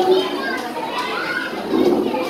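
Indistinct chatter of several voices, children's voices among them.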